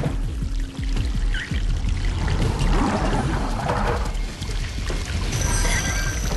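Water pouring into a sealed glass box, over film score music with a heavy low end.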